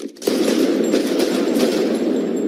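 Action-film soundtrack: a sharp hit, then about a quarter second in a sudden loud burst of rapid gunfire that keeps going.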